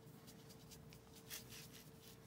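Very quiet, faint scratchy strokes of a paintbrush dabbing acrylic paint onto a rough stone, with a faint steady hum underneath.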